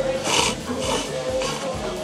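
Several short, noisy slurps of ramen noodles being sucked up from chopsticks, over light background music.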